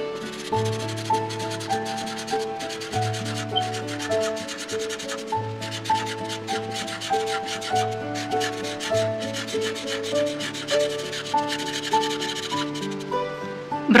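A felt-tip marker rubs and scratches across paper in quick, repeated colouring strokes. A simple background tune with a plodding bass note plays underneath.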